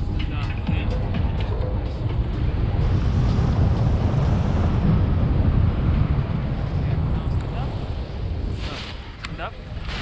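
Wind buffeting the camera microphone as a tandem paraglider comes in to land: a dense, loud rumble that eases off about eight seconds in as they touch down on snow.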